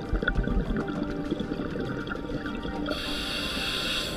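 Muffled underwater sound picked up through a camera housing during a scuba dive, with steady tones throughout and a hissing rush of bubbles starting about three seconds in.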